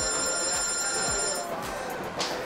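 Mobile phone ringtone: a high electronic tone sounds for about a second and a half, then stops, as a repeat of the ring just before it.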